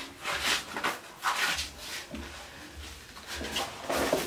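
Paper wallpaper strip rustling and rubbing as it is handled and pressed onto a glued wall, in a few short rustles.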